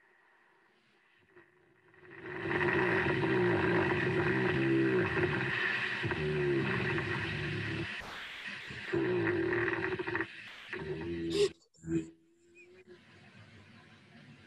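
A hibernating bear breathing slowly and snoring in its den, a low rumbling sound with a steady hum underneath, starting about two seconds in and broken off near the end.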